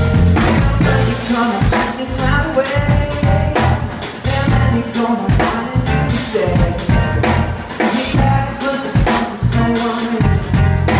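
A band playing live: a drum kit keeps a steady beat, with kick and snare hits, under keyboards and a heavy synth bass.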